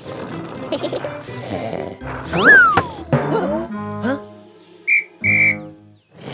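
Cartoon whistle sound effects over background music: a sharp whistle glide that rises and then falls about two and a half seconds in, the loudest sound, then a short and a longer steady whistle blast near the end.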